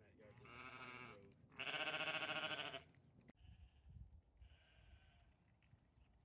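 Sheep bleating: two calls in a row, the second louder and about a second long.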